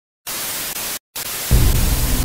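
Television static hiss in two short bursts with a brief dropout between them. About one and a half seconds in, a deep low rumble comes in under the hiss.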